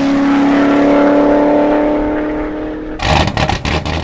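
Car engine held at a steady high rev after a quick dip in pitch, slowly fading. About three seconds in, it breaks into a short burst of rapid sharp pops.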